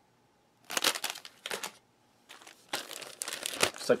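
Clear plastic bag crinkling as it is handled and unfolded, in two stretches of irregular rustling.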